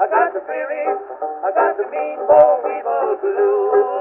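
Kazoos playing the melody in a buzzy, voice-like chorus over a strummed banjo, from a 1924 Edison Diamond Disc. The sound is narrow and thin, with no deep bass and no high treble.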